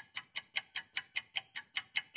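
Rapid, even ticking, about five ticks a second, like a clock or timer ticking sound effect.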